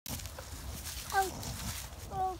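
A young child's single short, high-pitched vocal sound, falling slightly in pitch, about a second in, over a low background rumble.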